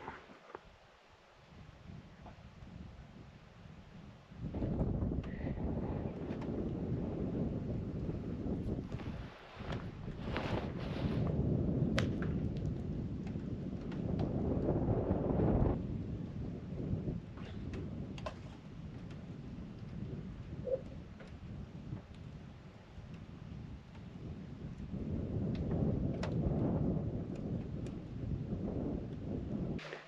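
Lake ice on a frozen high-altitude lake groaning in long, low rumbling swells that start about four seconds in, rising and falling, with a few brief cracks in between.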